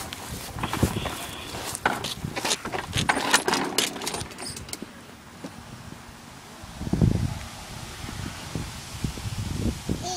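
Plastic ride-on toy car clattering and rattling in quick irregular clicks as it is pushed from grass onto a concrete path, its plastic wheels rolling. A low rumble comes about seven seconds in.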